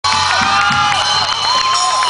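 Audience cheering, with many high-pitched screams and whoops gliding up and down, over the amplified sound of a rock band on stage.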